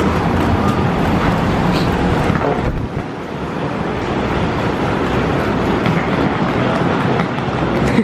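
Wheeled suitcase rolling across the floor, a continuous rumbling noise with a brief dip about three seconds in.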